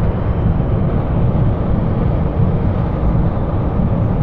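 Steady low rumble of highway travel heard inside a moving vehicle's cab: engine, tyre and wind noise.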